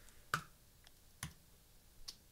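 Computer clicks: two sharp clicks about a second apart, with a fainter one between them.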